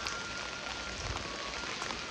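Steady heavy rain falling and pattering on a fabric umbrella held just overhead, an even hiss with no breaks. A faint thin high tone sounds through the first part and stops a little past halfway.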